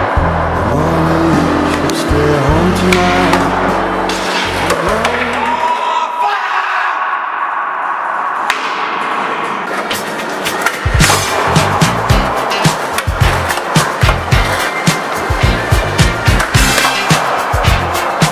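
Background music with held bass notes, a thinner break about six seconds in, and a steady beat from about eleven seconds, with skateboard sounds of a board rolling and clacking mixed in.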